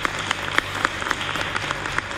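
Sharp, irregular clicks, about three or four a second, over a steady hiss of room noise.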